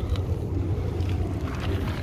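A steady low rumble of background noise, with no distinct event standing out.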